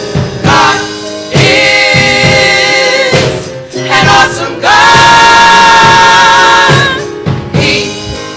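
Gospel choir singing, with one long held chord of about two seconds in the middle.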